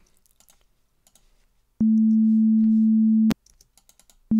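Faint mouse and keyboard clicks, then a pure sine tone from Ableton's Operator synth, the note A at about 220 Hz, held steady for about a second and a half. It starts and stops abruptly with a click at each end.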